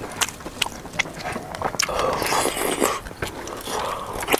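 A person eating close to the microphone: chewing and slurping mouthfuls of starch-coated pork in spicy broth, with many small sharp clicks and a noisier slurping stretch about halfway through.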